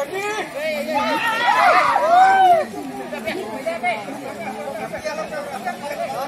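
Crowd chatter: many voices talking and calling out at once, with a louder stretch of overlapping calls in the first half.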